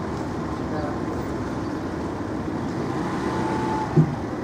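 Steady rumble of road traffic from passing cars, with a short knock at the very end.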